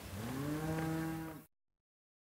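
A sheep bleats once: a long, low call that rises in pitch, then holds steady and is cut off abruptly about a second and a half in.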